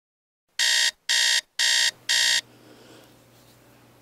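Electronic alarm clock beeping four times, about two beeps a second, as a wake-up alarm, followed by a faint low hum.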